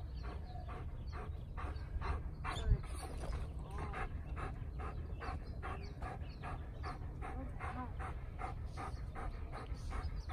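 A dog panting rapidly and steadily, about three breaths a second, as it is settled after protection-training arousal. There is a single low thump about three seconds in.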